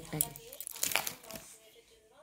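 Plastic photo-album sleeves crinkling and rustling as a page is turned, with a few sharp rustles in the first second that fade off toward the end.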